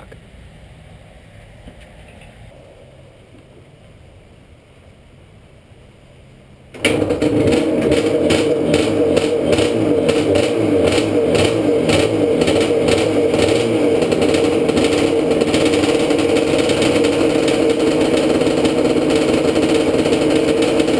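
Yamaha Banshee's twin-cylinder two-stroke engine firing up on its first start after a top-end rebuild. It catches suddenly about seven seconds in and keeps running loudly after a quiet stretch.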